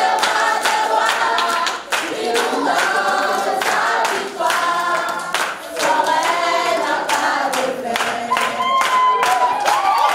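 A congregation of many voices singing together unaccompanied, with hand-clapping in a steady rhythm.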